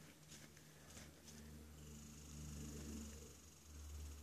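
Near silence: a faint, steady low rumble, with a few light clicks in the first second or so and a faint hiss in the second half.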